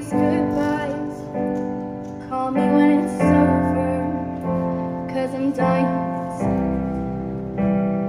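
Digital stage piano playing sustained chords that change about every second or so, with a woman's voice singing softly over parts of it.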